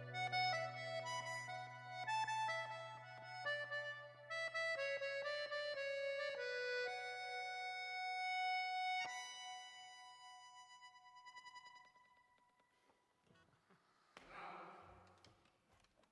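Accordion playing a slow melody over a held bass note, closing on a final chord about nine seconds in that rings on and fades away over the next few seconds. A short, soft noise follows near the end.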